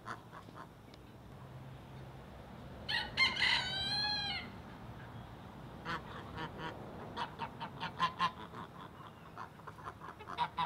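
Domestic geese calling: one long, drawn-out call about three seconds in, then from about six seconds a string of short, quick calls from the flock as they approach.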